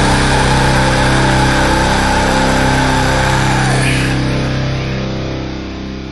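Heavy rock song ending on a held distorted chord that rings on steadily, then fades out over the last couple of seconds.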